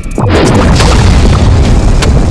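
A loud boom about a quarter of a second in, running on as a heavy rushing rumble under electronic intro music: a cinematic impact sound effect for a logo reveal.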